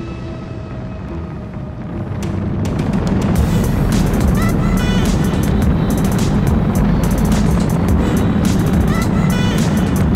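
Background music over the steady drone of a racing catamaran's twin sterndrive engines and the rush of wind at high speed. The whole sound grows louder about two seconds in and then holds steady.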